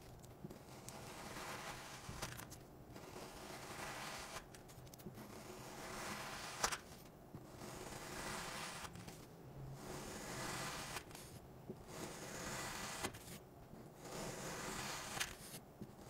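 A knife slicing through a block of kinetic sand, each stroke a grainy scraping hiss, repeated about every second and a half, with a short sharp tap about a third of the way in.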